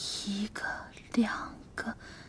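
Speech only: a woman quietly counting aloud in Mandarin, a few short separate words.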